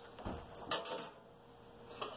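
Kitchen things being handled at a counter: a soft thump, then a sharp clack with a short rattle about three-quarters of a second in.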